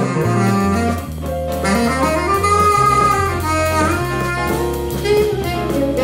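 Tenor saxophone solo in a big-band jazz mambo, with bass and drums behind it. The horn line glides up about two seconds in to a long held note, then falls away.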